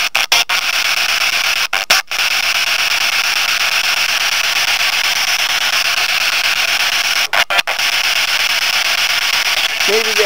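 Steady, loud static hiss, the kind of noise played in a spirit-communication listening session. It cuts out briefly a few times in the first two seconds, and again three times about seven and a half seconds in.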